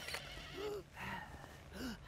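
A man lying hurt on the floor makes a few short, strained whimpering moans that rise and fall in pitch.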